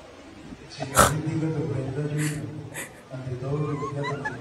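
A person's voice holding a low, steady tone in two long stretches with a brief break near the three-second mark. It begins with a sharp crack about a second in, and two short hissy bursts come in the middle.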